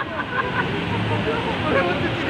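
Seawater from a storm surge rushing across a road in a steady noisy wash, with people's voices in the background.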